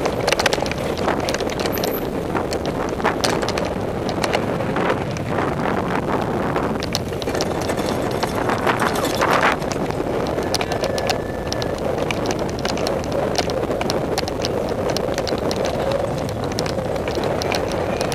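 Mountain bike ridden fast down a dirt singletrack, heard from a camera riding on the bike or rider: a steady rush of tyre and wind noise, with frequent clicks and rattles as the bike jolts over rocks and roots.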